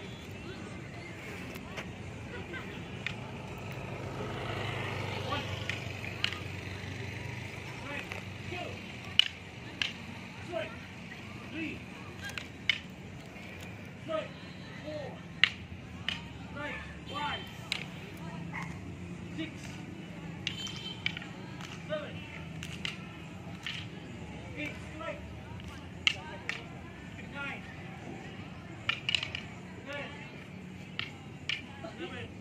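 Rattan Arnis sticks clacking against each other in a partner striking drill: sharp single knocks, often about a second apart, with occasional quick doubles. A broad swell of background noise rises and fades about four to seven seconds in.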